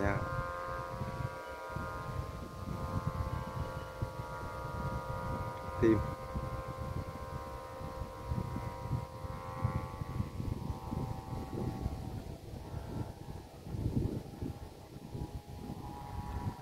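Flutes on a flying kite sounding a steady, siren-like chord of several pitches at once in the wind, fading away about twelve seconds in. A rumble of wind on the microphone runs underneath.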